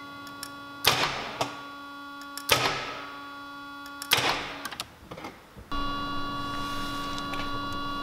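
A steady hum with three sharp knocks about a second and a half apart. Near the end a louder hum with several steady tones sets in.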